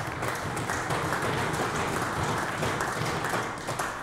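Many people clapping together, a steady run of applause from a seated group of legislators.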